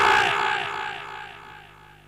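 Voices through a public-address system fading away in the hall's echo over about a second and a half, leaving only a faint steady hum.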